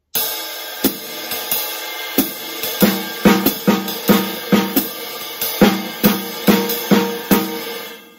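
Drum kit playing a basic jazz swing groove. The ride cymbal swings time, the hi-hats close on two and four, a crotchet triplet alternates on the snare, and the bass drum plays on all four crotchet beats.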